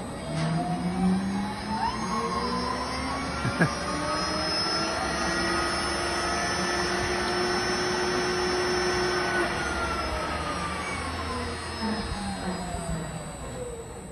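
Zipline trolley running along its overhead steel cable: a whine of several tones together that rises in pitch over the first few seconds and falls away toward the end, with one sharp click a few seconds in.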